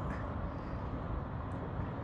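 Steady outdoor background noise, an even hum with no distinct events.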